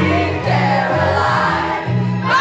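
Loud dance music with a pulsing bass line and voices singing.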